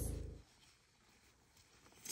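Near silence: a low steady hum fades out within the first half second, leaving a silent gap at a cut between clips.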